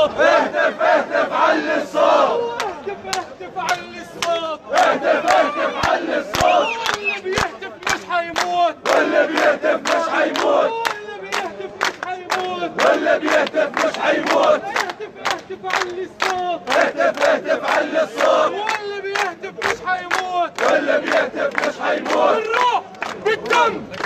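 A crowd of men chanting Arabic protest slogans in unison, shouted in rhythm, with sharp claps about three a second keeping the beat.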